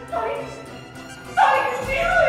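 A woman's voice crying out: a brief vocal sound near the start, then a loud, high exclamation about one and a half seconds in that slides down in pitch, over background music.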